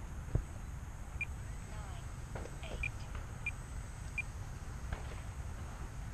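Low steady wind rumble on the microphone, with four short high beeps spread over a few seconds.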